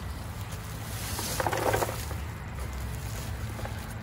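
Black woven landscape fabric rustling and scraping as it is hand-rolled onto a spool, over a steady low rumble.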